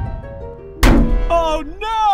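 Cartoon sound effect of a giant ice cream cone falling: a descending run of tones, then one loud thunk a little under a second in as it hits the ground, followed by short vocal exclamations.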